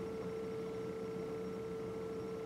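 A single steady electronic tone, like a held beep, with a fainter higher overtone. It holds one pitch and level without a break.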